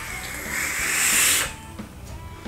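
Breathy hiss of a long drag on an e-cigarette mod: air drawn through the atomiser, swelling to a peak and stopping sharply about a second and a half in.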